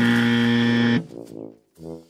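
Cartoon underscore: a loud, held, low brass note about a second long that cuts off abruptly, followed by short, quieter low brass notes.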